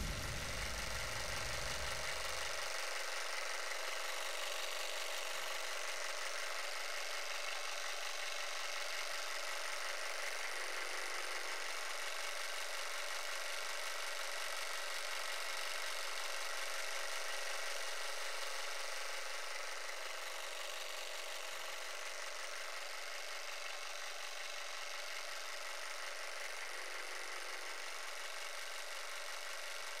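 A steady, even hiss-like noise with faint steady tones in it and no low end. A low rumble underneath fades out in the first couple of seconds.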